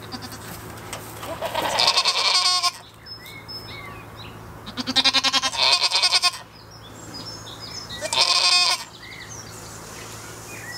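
Goats bleating: three loud, quavering bleats, each lasting about a second, starting roughly two, five and eight seconds in.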